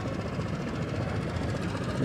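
Steady outdoor background rumble with a vehicle-like character and no clear engine note or distinct events.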